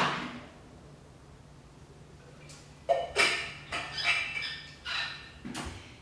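A sharp knock at the start, then a short quiet stretch, then a string of brief knocks and scuffs from about three seconds in: a person moving about and handling things around a Pilates reformer.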